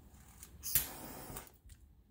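A short, sharp rush of breath, under a second long, about three-quarters of a second in.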